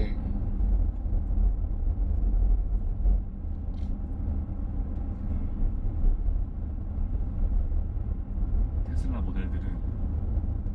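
Steady low road and tyre rumble inside the cabin of a Mercedes-Benz EQC 400 electric SUV on the move, with no engine sound.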